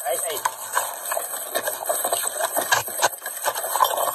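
A close-range physical struggle picked up on a police body camera: clothing and bodies rubbing against the camera, with scattered knocks and rattles. A man says "hey, hey" at the very start.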